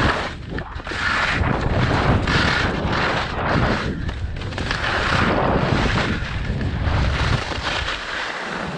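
Skis sliding and scraping over snow during a run, swelling and fading with each turn about once a second, with wind rushing and buffeting over the microphone.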